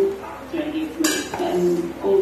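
A single sharp clink of kitchenware about a second in, with a brief ringing tail.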